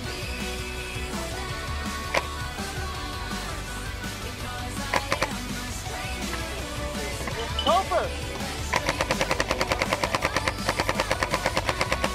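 Paintball marker firing a rapid, even stream of shots, about ten a second, for the last three seconds or so, after a few single shots about two and five seconds in. Music plays underneath.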